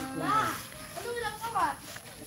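Voices talking indistinctly in the background, in two short stretches, quieter than the nearby speech.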